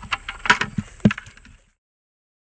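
Small live bait fish flopping in a white plastic bucket with little water, making a few sharp taps and knocks against the plastic. The sound cuts off abruptly about three-quarters of the way in.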